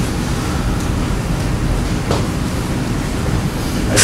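Steady low rumble of classroom background noise, with a faint click about two seconds in.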